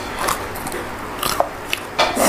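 Close-miked biting and chewing of a mouthful of food, heard as a few short, crisp mouth sounds.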